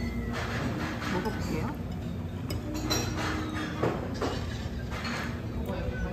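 Restaurant dining-room sound: indistinct voices and background music, with a few light clinks of a metal fork and knife on a ceramic plate.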